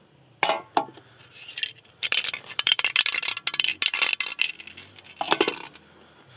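Aluminium drink cans, holed by airsoft BBs, being handled and set down on a wooden table. Two knocks early, a dense run of rapid metallic clinks and rattles in the middle, and two more knocks near the end.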